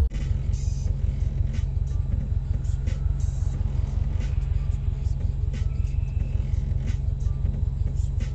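Car engine idling, a steady low rumble with a quick, even pulse, heard from inside the cabin of the stationary car.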